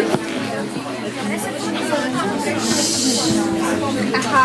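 Indistinct chatter of a group of young people, with a brief hiss about three seconds in.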